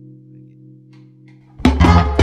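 A quiet sustained chord, then the full funk band comes in loud about one and a half seconds in, with sharp hits over a heavy bass.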